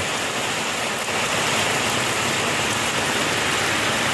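Heavy rain falling steadily: a dense, even hiss of rain.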